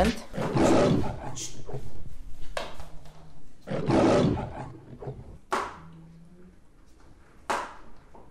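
Lion roaring, a sound effect, with the loudest roars about one second and four seconds in and shorter ones between.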